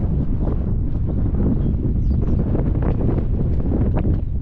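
Wind buffeting the action-camera microphone in a steady low rumble, with footsteps on a sandy dirt track.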